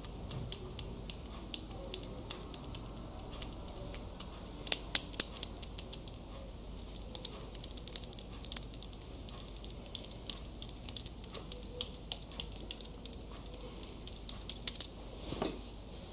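Metal link-bracelet wristwatch handled close to the microphone: quick, irregular small metallic clicks and ticks of the links and case, busiest in the second half with a short pause around six seconds in.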